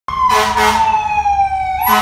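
Emergency-vehicle siren wailing, its pitch falling slowly and then sweeping back up near the end. About half a second in, two short blasts of another sound sit over it.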